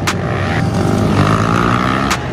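Pit bike engines revving, rising in pitch through the second half as the bikes accelerate. There is a sharp hit just after the start.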